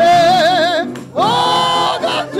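Gospel choir singing with keyboard accompaniment: a high voice holds a long wavering note, then after a short break a higher, steady note.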